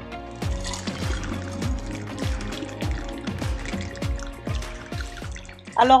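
Fresh green juice poured from a pitcher into a glass bottle, filling it over about five seconds, under background music.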